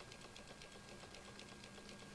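Near silence: room tone with a faint, even ticking of about nine ticks a second.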